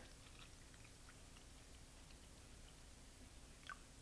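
Near silence, with faint small ticks and splashes as water is poured from a plastic bottle into a foil pouch.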